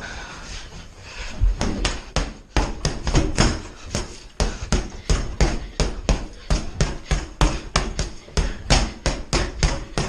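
A free-standing punch ball on a stand being hit over and over: a steady run of thuds, about two to three a second, starting about a second and a half in.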